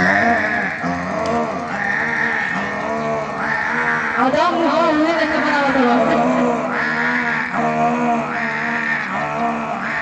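A man's voice through a stage microphone and loudspeakers, in long, drawn-out sung phrases that waver in pitch.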